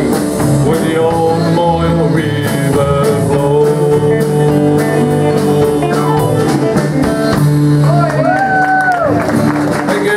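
Live country band playing the instrumental tail of a song: strummed acoustic guitar, electric guitar, keyboard and drums with a steady beat. A held note bends up and back down near the end.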